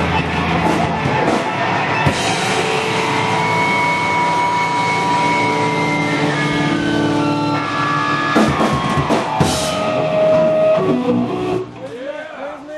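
A rock band plays live with drum kit, electric guitars and bass, with crashes about eight and nine seconds in. The music drops away sharply just before the end as the song finishes.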